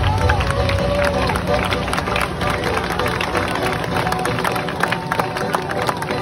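Crowd of spectators chattering and calling out over music playing from outdoor loudspeakers, a steady mixed din.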